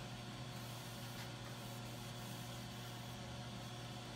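A steady low hum, as from a motor running in the background, faint and unchanging throughout.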